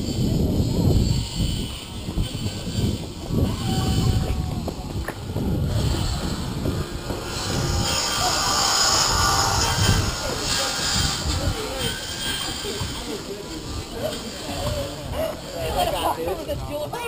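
Wind buffeting the microphone of a camera on a moving bicycle, a gusty rumble that rises and falls, with voices of people nearby.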